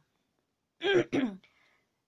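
A woman clearing her throat: two short, loud bursts about a second in.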